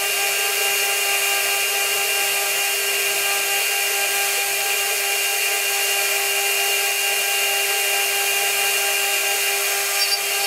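ELTE three-phase spindle motor on a CNC router running at constant speed with a steady high-pitched whine, its small cutter milling a wooden board with a continuous cutting hiss.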